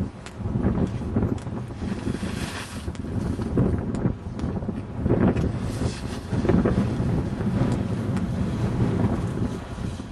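Strong, gusty wind buffeting the microphone, rising and falling, with two brief hissing surges, about two and a half seconds in and again near the middle.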